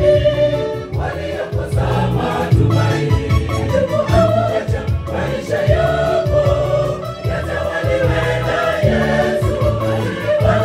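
Mixed choir singing a Swahili gospel song into microphones through a PA, full voices over a rhythmic bass line.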